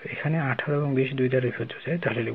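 Only speech: a man talking, explaining the working of a maths problem.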